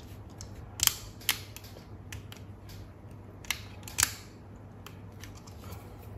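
Sharp, irregular clicks of plastic parts from the housing of a Braun Series 5 electric shaver being handled and snapped together during reassembly, the loudest about a second in and about four seconds in.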